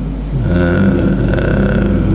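A man's voice holding one long, drawn-out vowel or hum at a steady pitch, starting about half a second in: a hesitation sound between sentences of a spoken lecture, picked up by a desk microphone.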